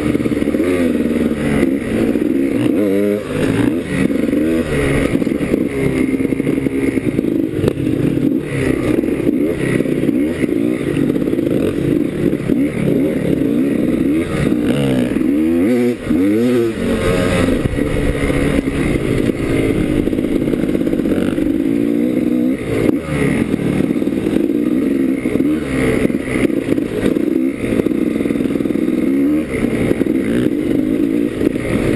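Enduro dirt bike engine heard from on board, revving up and down continuously as the throttle is worked along a rough trail, with the pitch rising and falling every few seconds.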